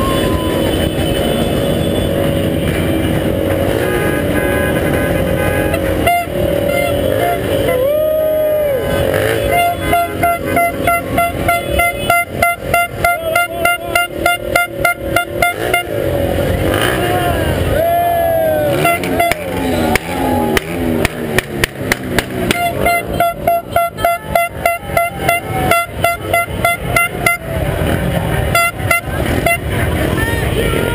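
Car horns honking in a street motorcade, with people's voices and music mixed in. A fast, even beat pulses through much of it.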